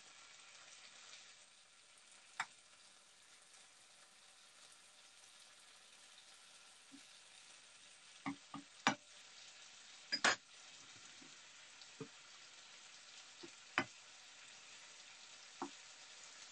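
Diced chicken sizzling quietly in a non-stick frying pan. A wooden spoon and metal tongs tap and knock against the pan a handful of times as the pieces are stirred and turned.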